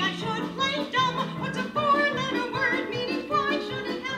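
A woman singing a musical-theatre song into a microphone, with instrumental accompaniment.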